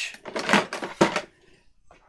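Clattering and rummaging in a plastic storage drawer as a hole punch is fetched out, with a sharp knock about a second in.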